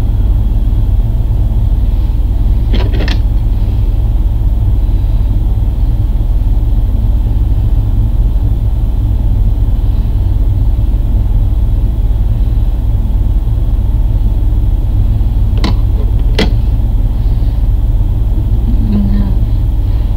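A steady, loud low rumble runs throughout, with a few brief faint clicks: one about three seconds in and two close together later on.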